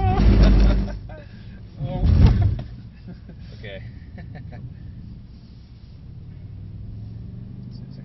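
Cabin sound of a Mercedes-AMG C63 S's 4.0-litre twin-turbo V8 at low revs, with laughter over it. Two loud low surges in the first few seconds give way to a steady low engine hum.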